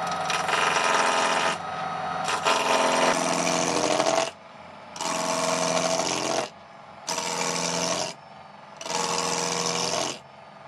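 JET mini wood lathe running while a turning tool cuts a spinning wood blank in repeated passes. Each cut is a harsh scraping rush lasting one to two seconds, with the lathe's steady motor hum in the short gaps between them.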